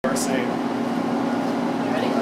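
Steady machine hum, like a fan or blower motor, holding one constant low pitch over a background hiss, with a brief bit of voice near the start.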